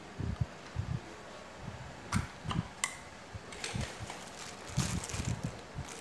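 Faint scattered clicks and light knocks as mains power is connected to an LG inverter air conditioner's circuit boards. The strongest is one sharp click about two seconds in.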